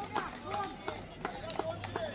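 Indistinct voices of players and onlookers talking and calling out around a kabaddi court, with a series of sharp short slaps or knocks scattered through, about half a dozen in two seconds.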